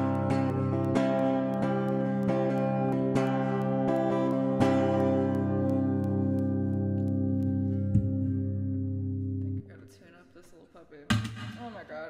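Acoustic guitar strummed in chords, then a final chord left to ring for several seconds until it is damped suddenly about two-thirds of the way in. A single thump comes about a second and a half later.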